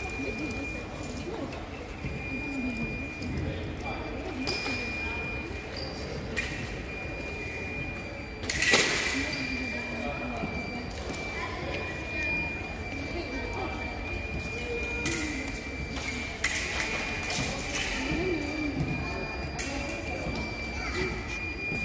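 Fencing hall sound: voices in the background, a steady high-pitched tone with short breaks, and a few sharp clacks, the loudest about nine seconds in.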